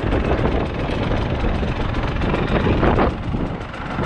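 KTM 300 TPI single-cylinder two-stroke dirt bike engine idling steadily in gear, with wind on the microphone. The Rekluse Radius CX auto clutch stays disengaged at idle, so the bike does not creep.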